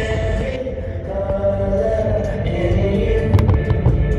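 Loud show music with sustained choir-like voices and heavy bass. Near the end, firework crackles and sharp pops cut through it.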